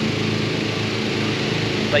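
A balloon inflator fan's small engine runs at a steady pitch, blowing air into a hot air balloon envelope that lies on the ground.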